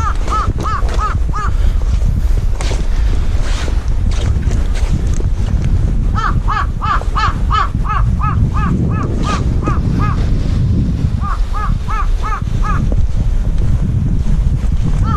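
A bird calling in quick series of short, arched, ringing notes, about four a second: a few at the start, a long run in the middle and a shorter run near the end. Wind rumbles on the microphone throughout.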